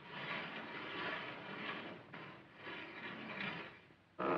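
Remotely operated iron gate's mechanism rumbling as the gate opens by itself, swelling and easing about once a second, then stopping just before the end.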